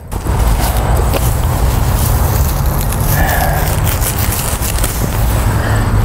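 Loud, steady rumbling and crackling noise on the camera's microphone that starts suddenly, with no clear voice or other source standing out.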